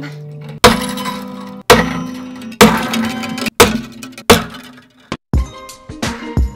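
Five tensioned acoustic-guitar strings on a Breedlove acoustic cut one after another with a string cutter, about a second apart. Each cut is a sharp snap, and the released string and the guitar body ring briefly and fade.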